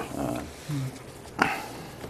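Brief, quiet fragments of a man's speech, a hum and a short word, with pauses of room tone between them.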